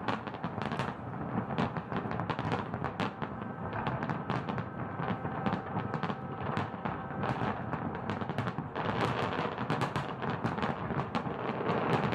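Fireworks going off: a rapid, irregular series of bangs and crackles over a continuous rumbling haze.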